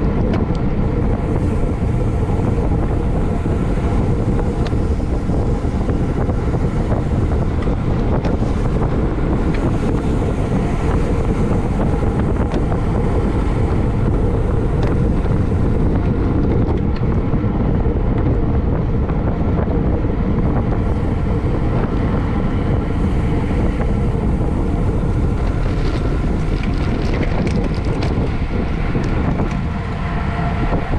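Steady wind noise buffeting the microphone of a camera mounted on a racing bicycle moving at speed.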